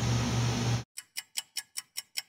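A steady room hum cuts off under a second in, and a fast ticking-clock sound effect follows: crisp, even ticks at about five a second.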